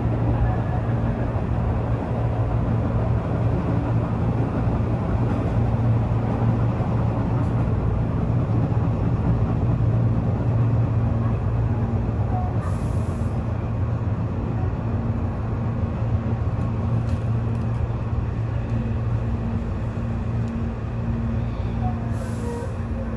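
Tobu 8000 series electric train heard from inside the front car, running into a station with a steady low hum and rail running noise, easing off slightly toward the end. There is a brief hiss of air about twelve seconds in.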